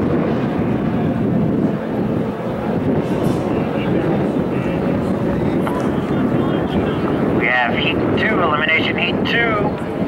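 Distant stock outboard racing engines of hydroplanes running out on the lake, a steady drone mixed with wind on the microphone.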